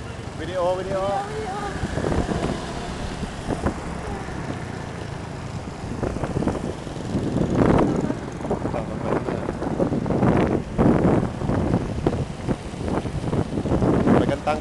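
Motor scooters running along a road, heard from one of them, with wind buffeting the microphone in repeated gusts from about six seconds in; a voice or two is heard briefly near the start.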